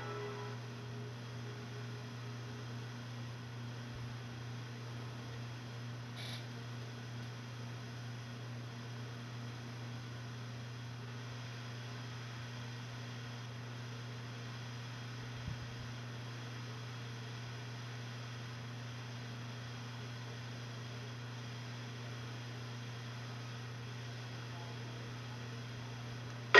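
Steady low electrical hum with faint hiss from a VHS tape's silent stretch, just after the tail of the logo music fades out at the start. A single faint tick sounds about halfway through.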